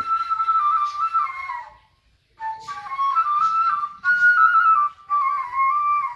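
Cane ney (end-blown reed flute) playing a slow melody that steps between a few close notes in a narrow range. It breaks off for a short breath pause about two seconds in, then carries on in several more short phrases.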